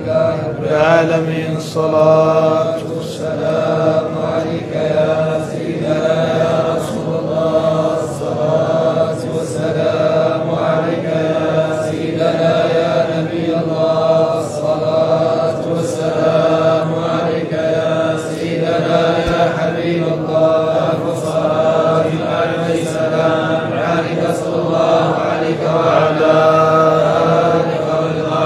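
Men's voices chanting together in a steady, unbroken devotional recitation, a repeated phrase carried on a sustained drone.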